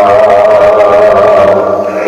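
Sikh devotional music (Gurbani kirtan): one long note held steady in pitch, changing about a second and a half in.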